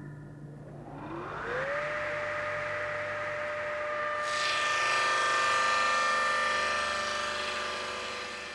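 Table saw motor spinning up, a whine rising in pitch and levelling off about two seconds in, then running steadily as the blade cuts through plywood, with a hiss of cutting that builds around the middle and eases near the end.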